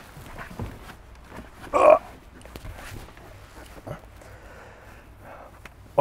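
A heavy man climbing into a car's rear seat: clothing and seat shuffling with a few light knocks. About two seconds in comes one short, loud grunt of effort as he squeezes in.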